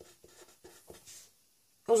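Marker pen writing on paper: a quick run of short, faint scratching strokes through the first second or so.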